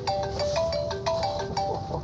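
Mobile phone ringing with a melodic ringtone, a short tune of clear notes: an incoming call.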